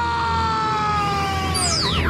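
Dramatic soundtrack sound design: a sustained, siren-like tone slowly sliding down in pitch over a heavy deep rumble, with fast sweeping pitch glides near the end.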